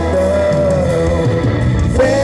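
Live band music with electric guitar and drums, one long wavering note held through most of it.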